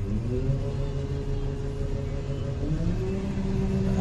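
John Deere 9760 STS combine's engine heard from inside the cab, its pitch stepping up once at the start and again about three seconds in as the speed is raised for unloading grain through the auger.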